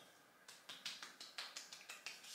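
Hands rubbing freshly sprayed sunscreen into the skin of the forearm: a quick run of faint, short swishing strokes, several a second, beginning about half a second in.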